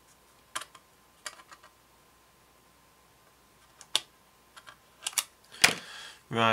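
Sharp little clicks and taps of plastic model-kit parts being pressed and handled, coming singly and in pairs with quiet between, more of them and louder near the end as the wing part is moved.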